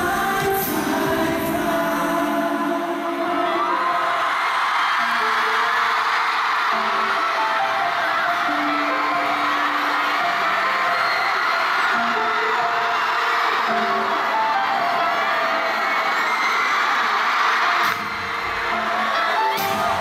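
Arena crowd screaming over a sparse stretch of a live pop song: a few long held notes, no bass or beat. Near the end the full backing track comes back in with its bass.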